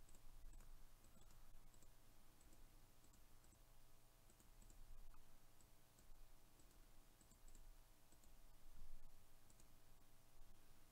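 Near silence with faint computer mouse clicks at irregular intervals.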